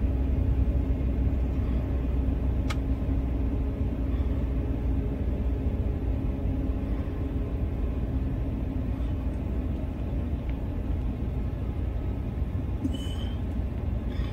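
Steady low rumble of a moving vehicle, with a faint click about three seconds in.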